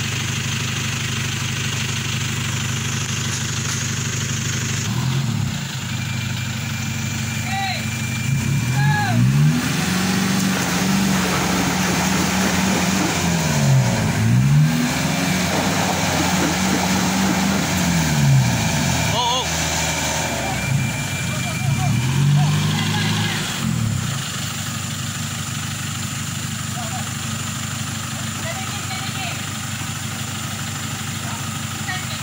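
Turbo-diesel truck engines idling, then revving hard in repeated rising and falling surges for about twenty seconds as a pickup on a tow strap strains to pull a loaded lorry out of deep mud, then settling back to a steady idle.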